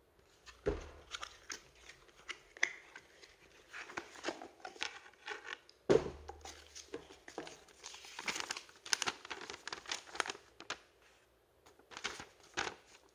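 Cardboard box flaps and a paper leaflet being handled, with irregular rustling and crinkling throughout. Two louder knocks stand out, about a second in and again halfway through, the second the loudest sound.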